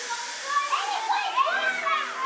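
Many children's voices at once, shouting and calling out together, growing louder about half a second in.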